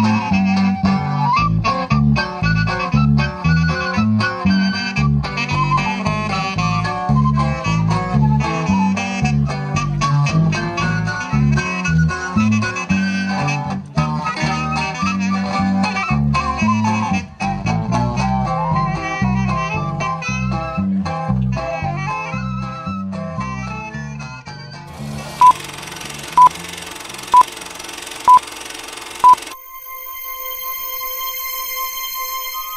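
Norteño band music for dancing: accordion-like reed melody over a busy bass line and strummed strings. Near the end the music fades into a steady hiss with five short electronic beeps about a second apart.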